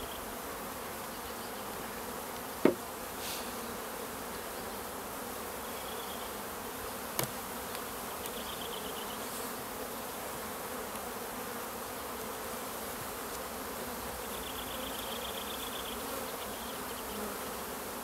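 Honeybee colony buzzing steadily over an opened hive. There is a sharp knock about two and a half seconds in and a lighter one about seven seconds in.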